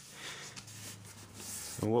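Creased sheet of printer paper rustling and rubbing under the hands as it is unfolded and smoothed flat, growing louder about a second and a half in.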